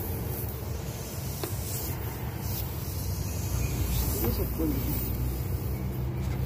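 Steady low machine hum that grows a little stronger partway through, with faint muffled voices in the background.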